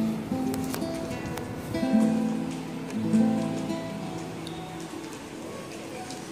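Guitar music: chords struck a few times, each left ringing, the notes dying away about five seconds in.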